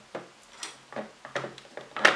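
About half a dozen light clicks and taps as a 9-volt battery's snap connector is pressed onto its terminals inside the plastic battery compartment of a multimeter.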